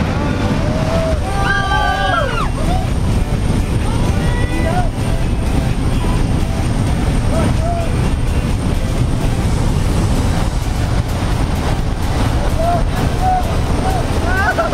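Jump plane's engine and wind noise, loud and steady inside the cabin during the climb. Short, faint shouted voices rise over it a few times.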